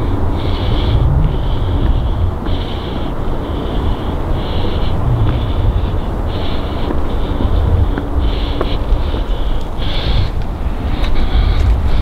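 Wind rumbling on the microphone, with footsteps crunching on the railway's gravel ballast about once a second.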